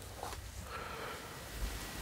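Quiet room tone with faint handling of a comic book in the hands, and a soft low bump about one and a half seconds in.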